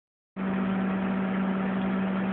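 Steady electrical hum with a whir of cooling fans from a homebuilt vacuum-tube RF transmitter running at about 100 watts into a dummy load: one strong low pitch with fainter steady tones above it. It cuts in abruptly a moment after the start.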